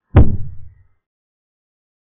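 A chess board program's move sound: one short knock of a piece being set down, heard as a pawn is played, dying away in under a second.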